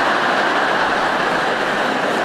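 A large audience laughing together at a joke's punchline: a dense, steady roar of many voices.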